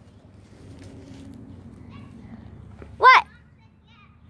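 A low, faint background rumble, then about three seconds in a single short, high child's vocal sound that rises and falls in pitch.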